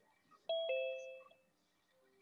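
Two-note electronic chime, a high note then a lower one a fifth of a second later, like a doorbell's ding-dong, ringing out within about a second.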